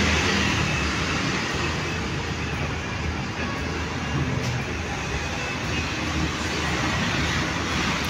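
Street traffic: a steady wash of passing cars and motorbikes, growing a little louder near the end.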